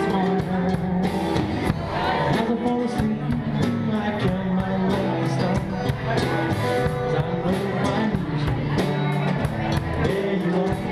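A small live band playing a song: drum kit and strummed acoustic guitar, with singing.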